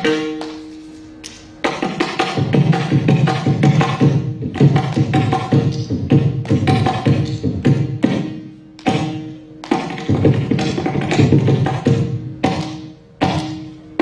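Carnatic percussion music: a mridangam played in dense flurries of rapid strokes, broken by short pauses in which a steady pitched tone rings on.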